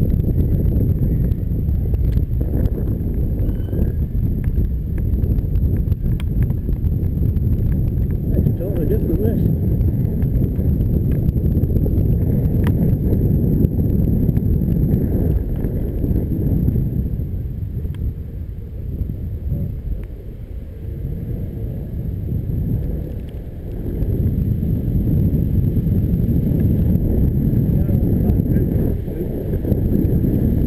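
Wind and road rumble on the microphone of a camera mounted on a moving bicycle, a steady low noise that dips for a few seconds just past the middle.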